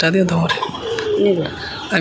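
An elderly woman's voice in short spoken phrases, with softer gliding, falling voice sounds in between.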